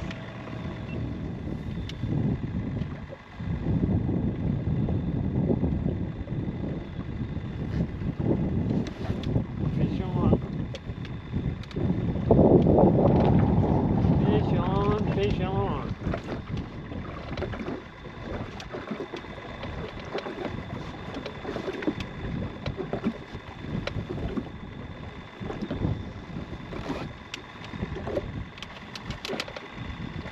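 Gusty wind buffeting the microphone on an open fishing boat, with water slapping the hull; the gusts swell loudest twice, about two seconds in and again past the middle. Small clicks and knocks come later, as the spinning reel is handled.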